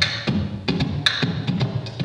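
Beatboxed percussion into a microphone: a steady beat of mouth-made kick and snare hits, about four a second, laid down as the first layer of a live loop.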